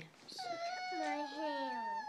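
A little girl's whimpering whine: one long, high-pitched, wavering cry that starts about half a second in and lasts about a second and a half.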